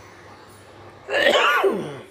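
A man sneezing once, loudly, about halfway through, the sound falling in pitch as it ends.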